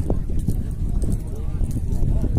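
Men's voices talking in a crowd around horses, with horses' hooves shifting and stepping on hard, dry ground.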